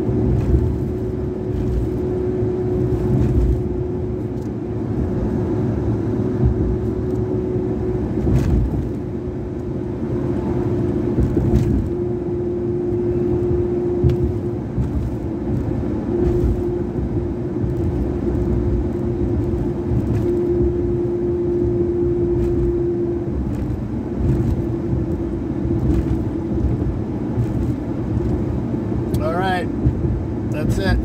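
Road and engine noise of a truck driving at highway speed, heard from inside the cab: a steady rumble with a held hum that drops out and returns a few times.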